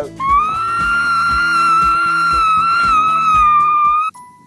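A party horn blown in one long, steady note lasting nearly four seconds, over background music with a steady beat.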